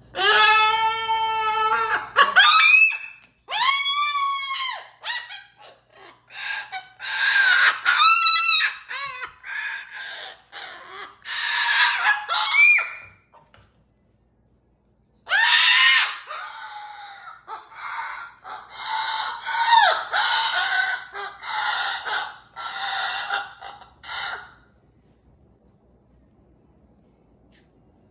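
Moluccan cockatoo calling loudly: a long screech that rises and falls, then a run of shorter squawks and laugh-like calls. The calls break off for about two seconds halfway through, then start again.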